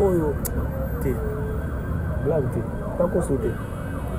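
A siren sounding, its pitch sweeping up and down over and over, with voices faintly under it.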